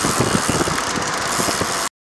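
Steady rush of wind and road noise at riding speed, with irregular low buffets of wind on the microphone; it cuts off suddenly near the end.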